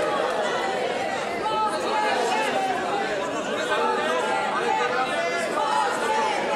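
Many voices talking and calling out over one another in the chamber: members of parliament heckling from the benches while the speaker at the rostrum waits.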